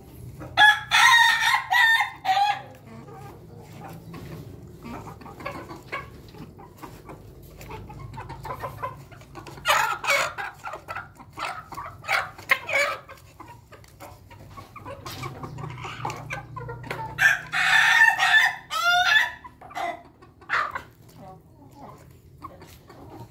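Roosters of an ayam ketawa × bangkok crossbred flock crowing twice, about a second in and again around seventeen seconds; the second crow ends in a rapid stuttering run of notes. Between the crows, chickens cluck in short bursts.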